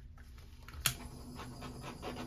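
Faint handling of plastic paint cups and a paint bottle on a covered table, with one sharp click a little under a second in and a few softer taps after it.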